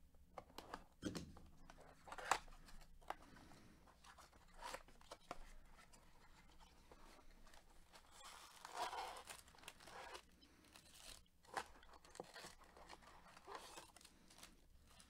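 Faint tearing and rustling of a cardboard trading-card hobby box being opened and its foil-wrapped packs handled: scattered crisp clicks, with a longer rustle about nine seconds in.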